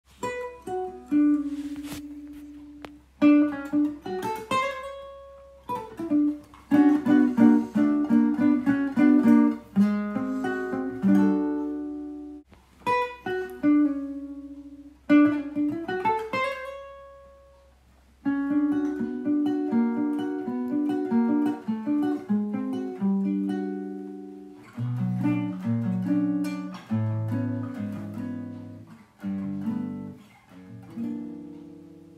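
Background music of a plucked guitar: picked notes that ring and die away, some sliding up in pitch, with lower notes joining in near the end.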